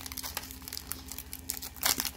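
Foil Pokémon booster pack wrapper crinkling and crackling in the hands as it is pulled at to get it open, with a louder crackle near the end.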